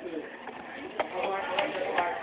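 Indistinct background voices, with a sharp tap about a second in as paperboard fry cartons are handled on a tray.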